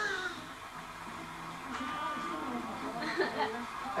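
Indistinct, quiet talk with a little chuckling, over the sound of a television playing.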